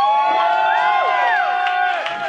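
Live audience cheering and whooping as the song ends, many voices overlapping in long shouts that rise and fall.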